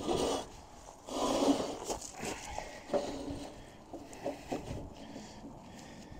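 A rusted bolt being worked loose and out of the steel reach of an old farm wagon running gear, metal scraping on metal. A few rough scrapes come in the first three seconds, the longest about a second in, followed by fainter clicks.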